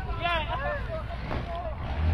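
Onlookers' voices calling out in the first second, over a steady low rumble.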